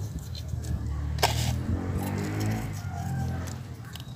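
A motor vehicle's engine running, a low hum that swells and then fades away, with one sharp click a little over a second in.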